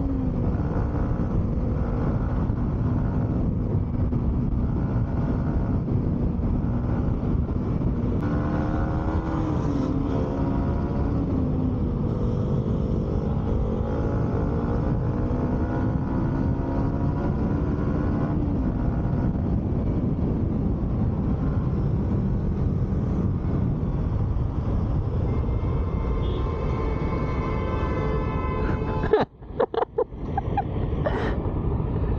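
Yamaha MT-15's single-cylinder engine running at riding speed, heard from the rider's seat over a heavy low rush of wind and road noise. Its tone dips and climbs a few times with throttle and gear changes, and the sound cuts out briefly near the end.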